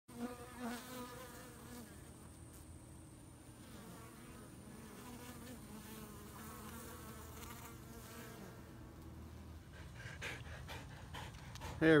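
Honey bees buzzing at the hive entrance: a steady hum from many bees, with single bees now and then flying close past, louder near the start.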